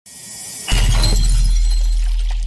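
Produced radio transition sound effect: a swelling whoosh that hits a loud crash about two-thirds of a second in, with a long, deep bass boom that slowly fades.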